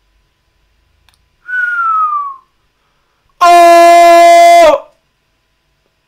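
A man's loud, sustained cry of "Oh!", held on one steady pitch for just over a second and cut off sharply. About a second before it there is a short, falling whistle.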